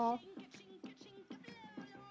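A woman's voice trails off on a drawn-out "no" right at the start. Then comes a quiet stretch with faint background music and a few soft clicks.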